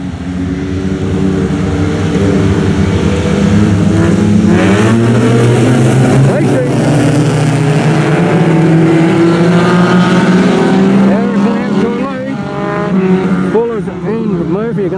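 A pack of speedway sedans on a dirt track accelerating hard from the race start, several engines revving together. Their pitch steps up and rises as the cars gather speed, loud throughout.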